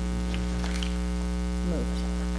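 Steady electrical mains hum in the meeting's audio feed, low and unchanging, with a few faint small clicks and rustles over it.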